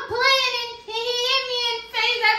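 A girl wailing as she cries: two long, high, wavering wails with a short break between them.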